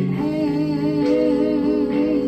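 A woman's voice holding one long wordless note with a wavering vibrato over backing music.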